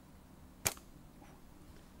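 A single sharp snap of a homemade wooden slingshot's rubber bands as the shot is released, about two-thirds of a second in.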